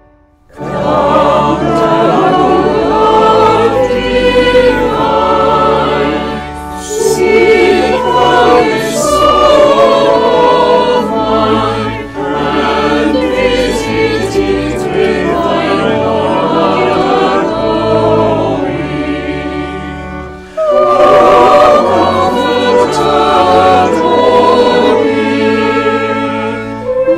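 Church choir singing, over held low bass notes of an organ. It begins about half a second in, with short breaks between sung phrases about 12 and 20 seconds in.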